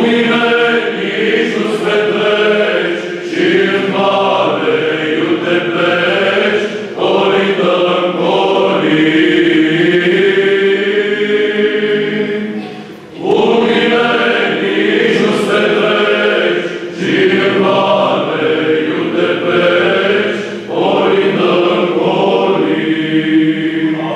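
Male psaltic choir singing a Romanian colind (Christmas carol) unaccompanied, with a short pause for breath about halfway through.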